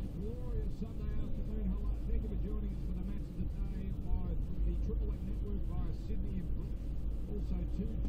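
Steady low rumble inside a car moving slowly, with a muffled voice over it.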